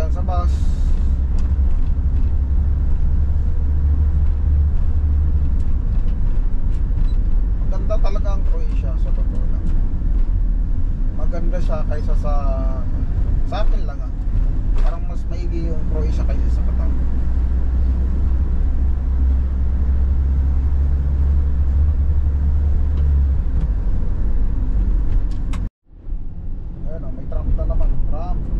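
Steady low engine and road rumble inside the cab of a delivery van on the move.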